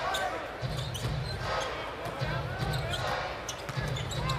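Live basketball game sound in an arena: a ball being dribbled on the hardwood court, with occasional sneaker squeaks over a steady crowd murmur.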